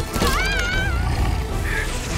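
A wolf's short, wavering yowling cry, rising and then bending up and down for under a second, over film-score music with a low rumble underneath.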